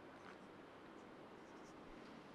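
Faint strokes and light squeaks of a marker writing on a whiteboard, over low room hiss.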